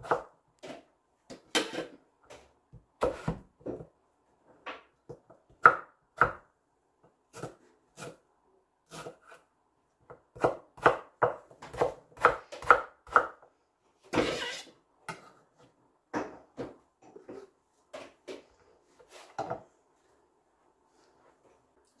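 Kitchen knife chopping mango on a wooden cutting board: irregular knocks of the blade striking the board, with a quicker run of cuts about halfway through. The chopping stops a couple of seconds before the end.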